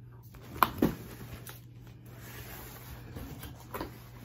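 A cardboard subscription box being handled as it is opened: two sharp knocks just under a second in, then soft rustling of cardboard and a couple of light clicks near the end.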